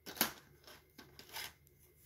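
A few short plastic clicks and rustles as a cassette case is handled. The loudest comes just after the start, with fainter ones through the middle.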